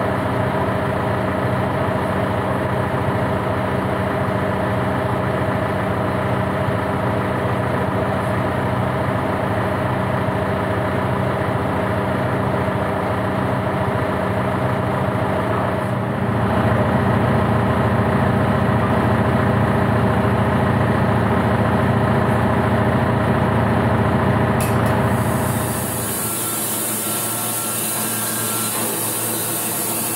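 John Deere tractor's diesel engine idling steadily, getting louder about halfway through and holding there. Near the end it gives way to a band sawmill blade cutting through a spruce log with a rasping hiss.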